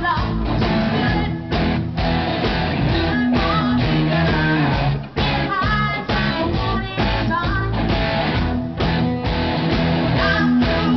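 Live rock band with electric guitar playing while a woman sings lead into a microphone: live-band karaoke, the music continuous throughout.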